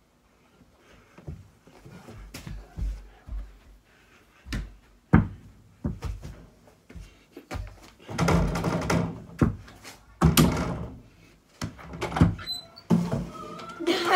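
Small ball being dunked through a mini basketball hoop mounted on a bedroom door: thuds and knocks of the ball on the backboard and rim, with the door banging and rattling in its frame. Single knocks come first, then a louder run of knocking and rattling from a little past the middle.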